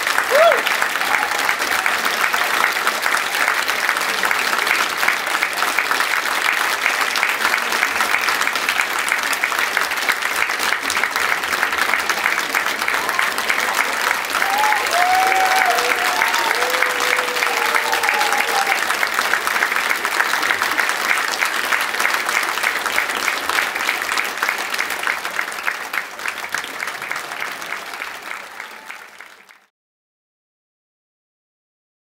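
Concert audience applauding steadily right after the end of an orchestral piece, with a few voices calling out about fifteen seconds in. The applause fades away near the end.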